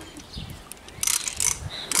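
Metal horse bit with a roller (coscojo) clinking and jingling as it is put into the horse's mouth, a short cluster of light metallic jingles about halfway through.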